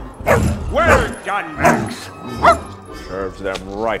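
A series of short yelping calls that slide up and down in pitch, a quicker cluster of them near the end, over background film music.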